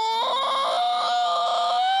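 A cartoon character's long, high-pitched wordless wail, held as one unbroken cry that steps up in pitch shortly in and then slowly rises.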